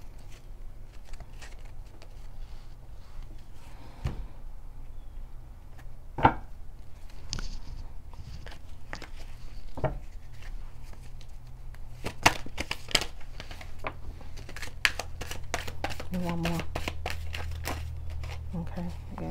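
Oracle cards being shuffled and handled, with one card laid down on a cloth-covered table: scattered soft clicks and flicks of card stock, a quicker run of them past the middle. A steady low hum runs underneath and grows louder near the end.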